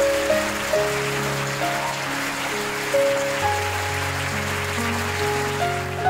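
Slow solo piano melody of single sustained notes, with a steady wash of audience applause beneath it.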